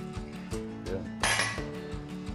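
Background music with a steady beat, and a ringing metallic clatter of iron weight plates on a trap bar about a second and a quarter in.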